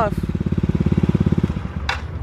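Small motor scooter engine idling with a fast even pulse, then switched off about one and a half seconds in.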